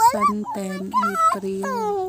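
A person's voice making drawn-out vowel sounds without clear words, the pitch sliding up and down and held steady near the end.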